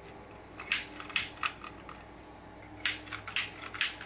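Handling noises as a hand-held hair dryer is picked up: a few short clicks and knocks about a second in, then a quick cluster of them near the end.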